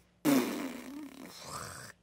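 A woman's drawn-out, gravelly throaty vocal noise without words, a grunt-like sound that starts suddenly and trails off.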